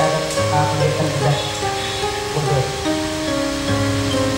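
Music: held melodic notes that change pitch every second or so over a steady low bass note.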